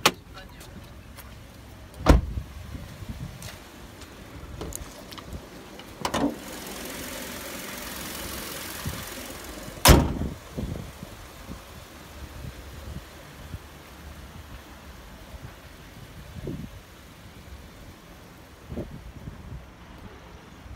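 Thumps and handling noise around a 2012 Kia K5, with a loud car-door slam near the middle and another sharp thud about two seconds in. A steady hiss runs for about three seconds before the slam.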